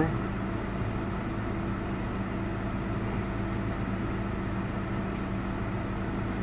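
Steady low mechanical hum with a few constant low tones, as of an idling vehicle.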